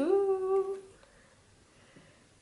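A woman's drawn-out 'ooh', sliding up in pitch and then held, lasting about a second.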